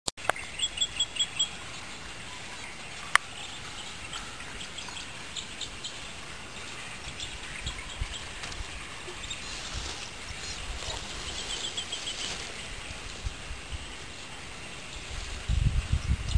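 Small bird chirping in quick runs of short, high chirps, one run near the start and another about twelve seconds in, with scattered chirps between, over a faint outdoor hiss. A single sharp click about three seconds in.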